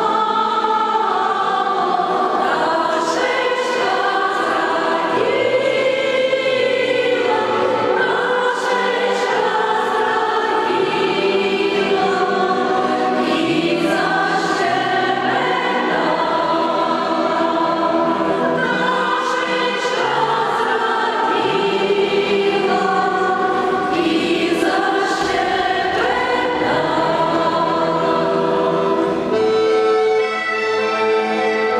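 Women's choir singing unaccompanied in several-part harmony, with long held notes.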